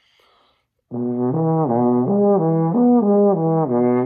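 French horn playing a slow lip-slur flexibility exercise, slurring up and down between notes of the overtone series, about three notes a second. It starts about a second in, after a faint breathy hiss.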